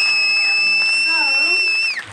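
Audio feedback squeal from the stage sound system: one steady high whistle that slides down in pitch as it cuts off at the end.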